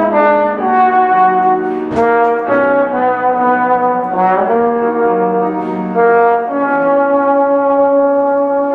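Tenor trombone playing a slow melody of sustained notes with piano accompaniment, with a short upward slide into a note a little past halfway.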